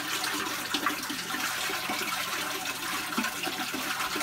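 Steady running water, an even rushing flow.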